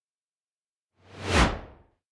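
A single whoosh transition sound effect about a second in. It swells and fades within a second, and its hiss sinks in pitch as it dies away.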